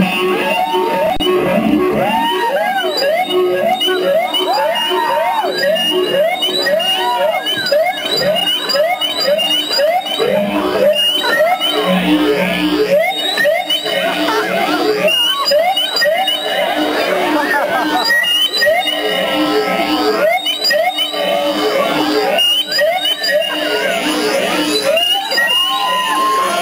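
Live punk band's noise freakout: a rapid run of wavering, sliding wails, about two or three a second, over steady feedback-like tones, without a steady drumbeat.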